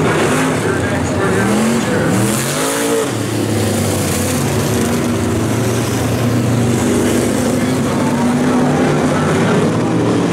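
Engines of several Super Street class race cars running hard around a dirt oval. The engine pitch rises sharply about two seconds in as the cars accelerate, then holds as a steady drone.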